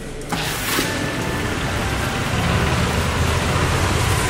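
Light outdoor rain, a steady hiss over a low rumble of traffic. It cuts in suddenly about a third of a second in, going from indoors to outdoors.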